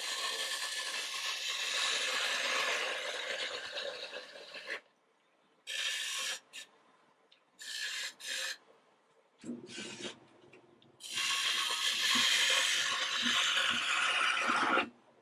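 Turning tool cutting green, spalted aspen on a spinning wood lathe, shaping the outside of a vase: a steady hissing shear as shavings peel off for about five seconds, then a few short cuts, then another long cut starting about eleven seconds in.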